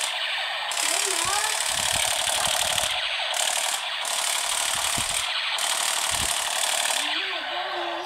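Battery-powered light-and-sound toy pistol playing its electronic rapid-fire effect through a small speaker: a steady, harsh, tinny rattling buzz with no bass.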